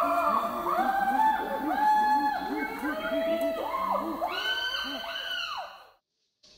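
A chorus of chimpanzee pant-hoots: many overlapping hooting calls that rise, hold and fall in pitch. The chorus fades out near the end.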